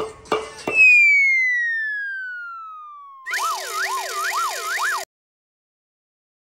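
Comic sound effects: after a few quick knocks, a long falling whistle glides down for about two and a half seconds, then a wavering siren-like warble runs for about two seconds and cuts off suddenly.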